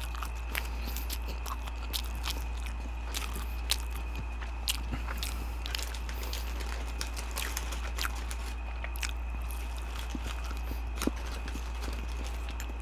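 Close-miked chewing of fried chicken nuggets: irregular crunches and wet mouth clicks, with some handling of paper wrappers, over a steady low hum.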